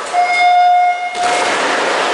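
Electronic race-start horn sounding one steady tone for about a second, the start signal of a swimming race, followed by the splashing of the swimmers diving into the pool.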